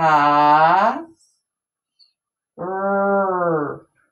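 A woman's voice drawing out two long syllables, about a second each with a pause between, sounding out the word 'manta' slowly as it is written. The first rises in pitch at its end and the second falls slightly.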